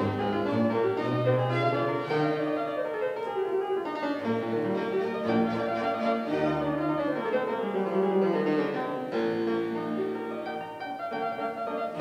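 Fortepiano playing a classical-era concerto passage of quick running notes, with several descending runs, accompanied by a string orchestra.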